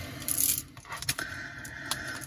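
A few light clicks and clinks of carved fluorite stone beads knocking against each other as strung bead bracelets are handled.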